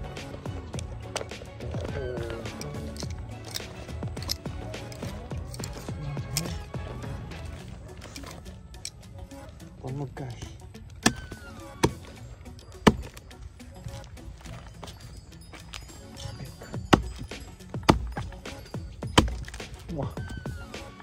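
Background music, with a knife blade chopping into a soft rotten log: about six sharp knocks in the second half, some a second apart.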